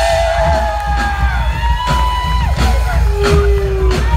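Live rock music on stage: a drum kit played hard with a heavy low end underneath, while a crowd whoops and yells over it.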